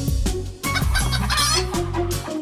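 Cartoon rooster clucking, with a warbling call about a second in, over background music with a steady bass beat.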